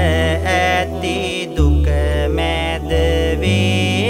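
Sinhala Buddhist devotional verse (kavi) chanting set to music: a drawn-out, wavering melodic chant over sustained low bass notes that change every second or so.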